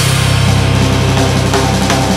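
Nu metal band playing without vocals: a heavy, sustained low chord held over drums.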